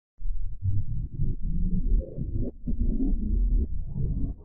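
Logo-intro soundtrack played back in reverse and pitched down very low, coming in about a fraction of a second in: a dense, choppy, deep sound whose pitched parts sit low, with a brief dip about halfway through.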